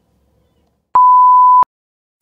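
A single steady electronic beep, one pure high tone lasting about three quarters of a second, starting and stopping abruptly with a click at each end. It is an edited-in beep sound effect.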